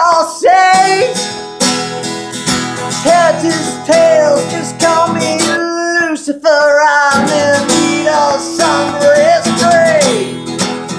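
Acoustic guitar strummed in a steady rock rhythm, with a man's wordless singing sliding up and down over it. About six seconds in, the strumming stops for a moment as the strumming hand comes off the strings, then starts again.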